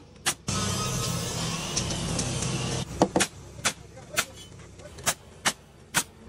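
A small motor, likely a power tool, runs steadily for about two seconds and then stops, followed by a series of sharp knocks roughly half a second apart.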